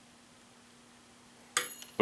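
Near silence, then about one and a half seconds in a sharp metallic clink with a brief high ring: a small steel treble hook dropping and striking a hard surface.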